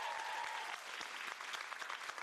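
Studio audience applauding, with one long held cheer over it that ends under a second in.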